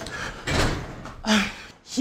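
A door knocking shut about half a second in, followed just after a second in by a brief sound from a person's voice.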